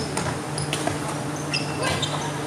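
Athletic shoes squeaking in short, high chirps on a wooden badminton court, with a couple of sharp clicks, over a steady low hum in a large hall.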